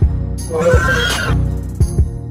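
Background music with a steady beat, with an animal-call sound effect for the animated ornithomimid dinosaur Kinnareemimus starting about half a second in and lasting under a second.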